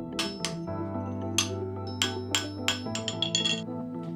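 Hand hammer striking a cast bronze axe blank on an anvil with sharp metallic blows, a few at a time, then a quick run of lighter taps near the end: forging the blank into axe shape. Soft ambient music plays underneath.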